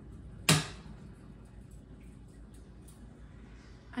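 A single sharp click about half a second in, a rocker switch on the popcorn machine being flipped on to start the stirrer or the pot heater. After it there is only a faint, steady low background.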